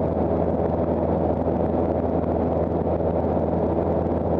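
Cessna 172's piston engine and propeller running steadily in flight, heard from inside the cabin as an even, unchanging drone.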